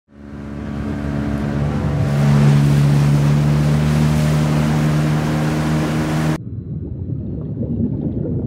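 Motorboat engine running steadily at speed, with rushing water and wind on the microphone, fading in over the first couple of seconds. About six seconds in, the bright noise cuts off suddenly, leaving only a muffled low rumble.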